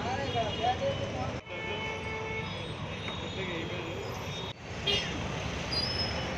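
Busy fuel-station forecourt noise: motor-vehicle engines running, background voices, and a few thin horn-like tones. The sound drops out and changes abruptly twice, at edit cuts.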